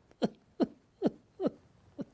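A man's anguished, convulsive cries: four short bursts about half a second apart, each falling in pitch, with a fainter one at the end.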